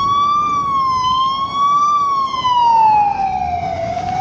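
Police car siren wailing loudly. Its pitch wavers up and down for the first two seconds, then slides down in one long fall and starts to climb again at the very end.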